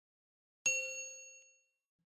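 A single bell-like ding sound effect for the notification bell of a subscribe-button animation. It strikes once and rings out with several pitches together, fading away over about a second.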